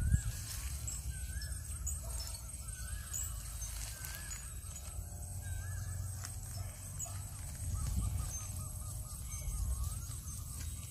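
Birds calling outdoors: short warbling calls, with a quick run of repeated notes near the end, over a steady low rumble.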